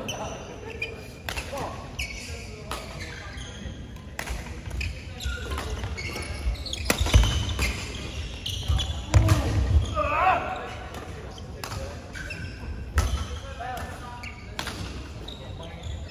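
Badminton play in a large echoing hall: sharp racket strikes on the shuttlecock, roughly one a second, with heavy footfalls on the court floor, loudest between about seven and ten seconds in. Voices carry from around the hall.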